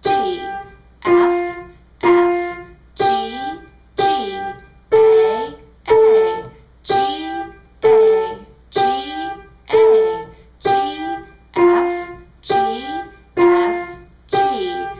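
Piano played one note at a time at a steady pulse of about one note a second. It is a beginner's note-reading exercise moving among the neighbouring notes G, F and A above middle C, each note struck and left to ring.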